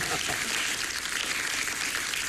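Studio audience applauding, a steady even clapping.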